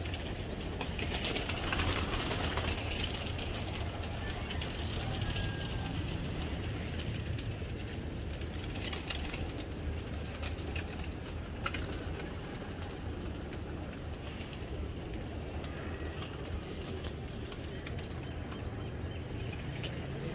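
Domestic pigeons cooing at the loft, over a steady low outdoor background.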